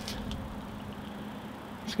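Faint, steady outdoor background noise with a low hum, with a couple of light clicks just after the start.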